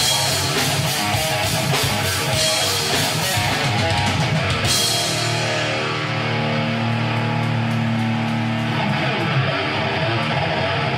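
Thrash metal band playing live: heavily distorted electric guitars over a drum kit with fast, constant cymbal hits. About halfway through, the cymbals drop out and the guitars ring on with held low chords.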